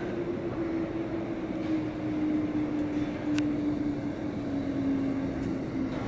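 A low, steady mechanical drone, slowly falling in pitch throughout, over a background rumble, with a single sharp click about halfway through.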